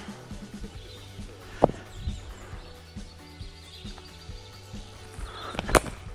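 Soft background music, with a sharp tap about a second and a half in, then near the end one loud, sharp crack of a cricket bat striking the ball.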